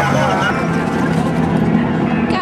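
People talking, then a steady low engine-like drone under general outdoor noise.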